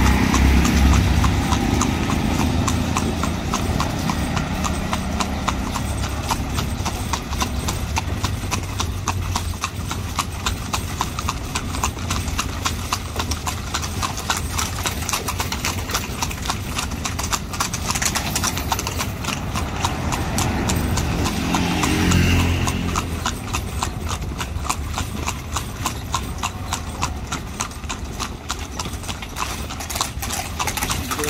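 Horse's shod hooves clip-clopping on an asphalt road in a steady, even rhythm while it pulls a carriage. A motor vehicle passes close at the start, and another louder passing noise swells about two-thirds of the way through.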